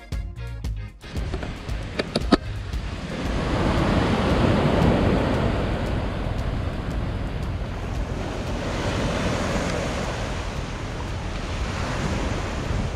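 Small waves breaking and washing up a pebble-and-sand beach, the surge swelling about four seconds in. A couple of sharp clicks come about two seconds in.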